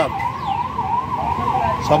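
A siren in its fast yelp mode, its pitch sweeping up and down about three times a second.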